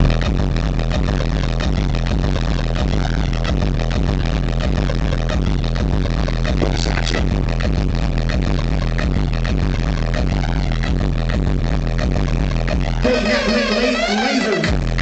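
Loud electronic dance music from a DJ set over a festival sound system, with a steady heavy bass. About 13 seconds in, the bass drops out and a higher melodic line carries on alone.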